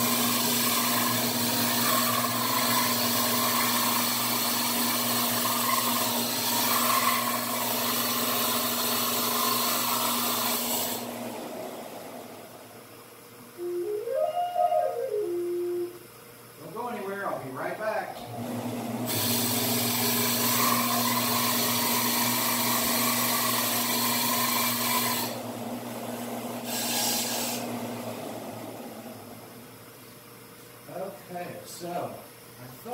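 Electric sander running off to one side, grinding down the end of a river-cane flute to raise its flat bottom note. About eleven seconds in it stops and the flute is played, a short run of notes up and back down and then a few more, before the sander starts again for several seconds and then dies away.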